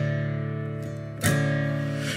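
Steel-string acoustic guitar in drop D tuning, fingerpicked: a chord rings and fades, then a new chord is struck a little past halfway through.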